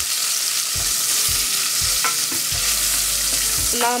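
Sliced onions, chili pepper and a stock cube sizzling in hot oil in a stainless steel pot, stirred with a wooden spoon. The frying makes a steady hiss under a few soft knocks of the spoon.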